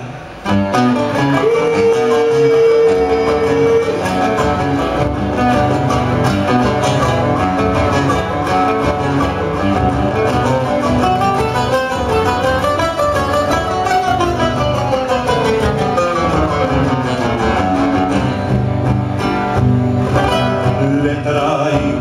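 Several acoustic guitars play an instrumental introduction to a Cuyo folk song, with melodic runs rising and falling. A single note is held steady for a couple of seconds near the start.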